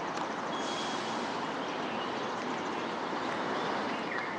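Steady outdoor city ambience: a constant, even wash of distant traffic, with a few faint high bird chirps.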